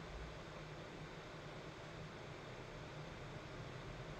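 Faint steady hiss with a low hum underneath: the background noise of a recording microphone in a room, with no distinct sound event.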